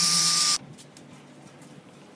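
Ryobi 18V brushless compact drill spinning a soft brush head over a wet, soapy metal stove top: a steady motor whine over a loud scrubbing hiss. It cuts off suddenly about half a second in, leaving only faint small ticks.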